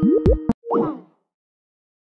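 Electronic incoming-call ringtone of bubbly, rising plop-like notes over steady tones, from a caller ringing in to the live stream. It cuts off suddenly about half a second in, with one last short blip.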